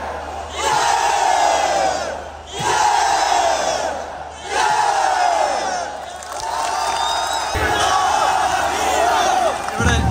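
Football stadium crowd chanting in unison: a short shouted phrase repeated four times, about every two seconds, then looser shouting over a deep thud near the end.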